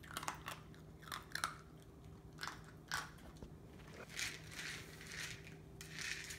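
A puppy chewing dry kibble, with irregular crunches every second or so.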